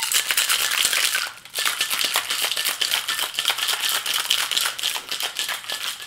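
A little ice rattling hard inside a metal cocktail shaker, shaken vigorously, with a brief letup about a second and a half in.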